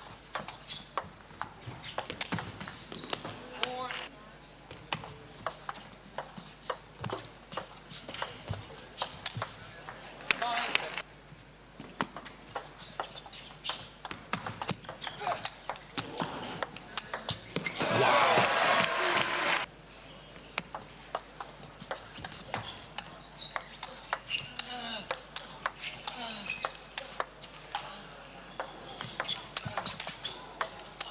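Celluloid-era table tennis ball being hit back and forth in fast rallies: sharp clicks of the ball off the rubber-faced bats and bounces on the table, several points in a row with short pauses between them. Past the middle comes a loud burst of shouting and cheering that lasts about two seconds.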